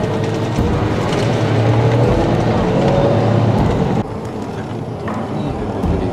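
Cabin noise inside a moving highway bus: steady engine rumble and road noise, which drops to a quieter hum about four seconds in.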